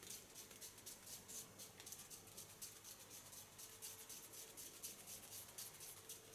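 Faint, quick scratching as a heated razor (hot knife) is drawn along a lifted section of hair, texturing and sealing the ends, over a faint steady hum.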